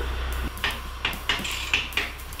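Sharp metal-on-metal clinks and knocks, about six in quick succession starting about half a second in, as the mounting bolt of a motorcycle's rear mono shock absorber is worked out.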